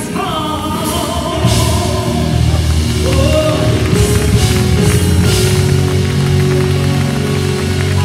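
Live gospel band with drum kit and keyboard playing behind a female lead singer. The band gets louder about a second and a half in, with cymbal crashes near the middle.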